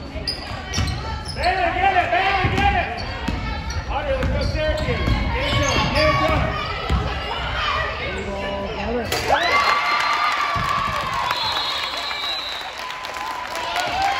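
Live sound of a girls' basketball game in a school gym: a basketball bouncing on the hardwood floor amid players' and spectators' voices calling out.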